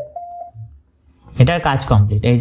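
A man speaking, broken by a pause of about a second. A brief steady tone sounds just after he stops, before the pause.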